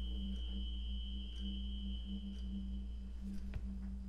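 A low, steady drone with a thin, high held tone above it that fades out about three quarters of the way through. It is an eerie ambient underscore with no piano notes struck.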